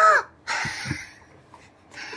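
A woman's short, high-pitched cry of surprise at the reveal of a card trick, followed by about half a second of breathy gasping.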